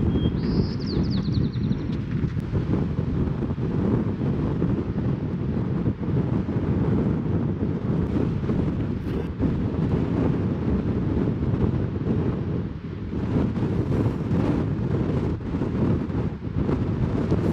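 Wind buffeting the microphone: a steady low rumble throughout, with a brief high chirp in the first couple of seconds.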